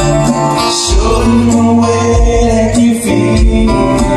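A live band playing: strummed acoustic guitars, bass and keyboard, with singing.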